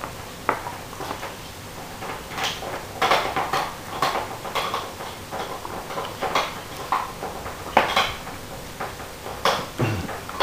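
Dog gnawing a large cooked marrow bone: irregular clicks, scrapes and knocks of teeth on hard bone, a few of them louder.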